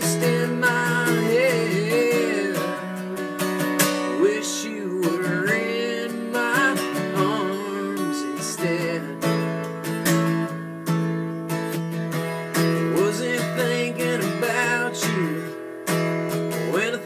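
Strummed acoustic guitar accompanying a man singing a country song, the voice gliding and wavering over steady chords.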